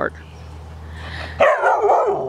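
A Labrador Retriever puppy barking loudly about one and a half seconds in, the pitch falling away.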